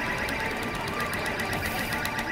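Video slot machine's bonus-round sounds: a rapid ticking as the on-screen score counts up, over the steady din of casino machines.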